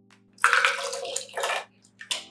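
Wet chopped roasted red peppers tipped from a glass bowl into a plastic blender jar, a slithering, splashy pour in two bursts about half a second and a second and a half in.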